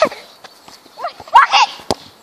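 Football volleyed off the foot: a single sharp thud near the end as the boot strikes the ball.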